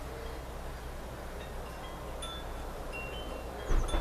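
A few scattered high, thin, bell-like tinkles, like chimes, over a steady background hiss; a short low thump near the end.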